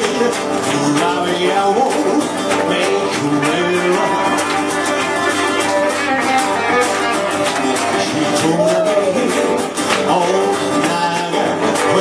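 Live music from an electric guitar and an acoustic guitar playing together at a steady, loud level.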